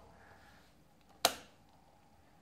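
A single sharp click of a drafting tool against the drawing board about a second in, over quiet room tone.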